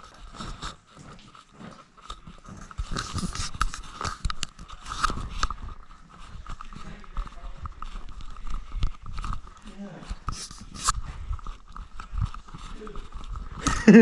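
Repeated clicks, knocks and rustles of a camera being handled close to the microphone, over a faint steady whine.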